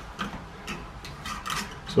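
A few scattered light clicks and taps as a metal hose clamp and a screwdriver-handle nut driver are handled against PVC pipe.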